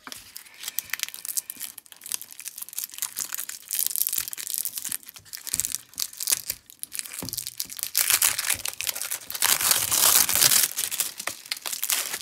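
Clear plastic wrapping crinkling and crackling as hands peel it away from a rolled diamond painting canvas, with a louder stretch of crinkling about ten seconds in.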